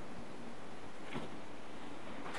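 Quiet room tone: a steady faint hiss, with one brief faint sound about a second in.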